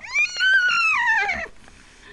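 A child's high-pitched squealing cry. It is a single call that jumps up and then slides down in pitch over about a second and a half.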